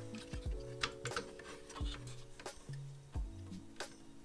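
Quiet background music with a slow beat, held bass notes and light ticking.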